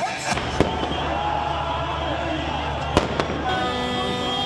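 Crowd noise from a street rally, broken by two sharp firecracker bangs, the first about half a second in and the second about three seconds in. A steady, horn-like tone joins near the end.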